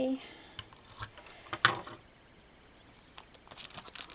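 Hands handling paper and a translucent plastic pocket page in a journal: a few light taps and crinkles, the loudest about a second and a half in, then soft ticks near the end.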